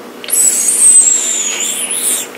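A high, wavering whistle through pursed lips, starting just after the beginning and lasting about a second and a half.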